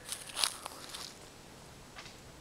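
A few faint footsteps in the first second, the clearest about half a second in.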